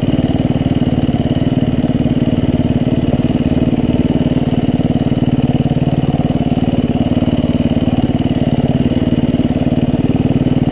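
Dirt bike engine running at steady low revs while being ridden, heard close up from the rider's helmet, with an even stream of firing pulses and no big revs.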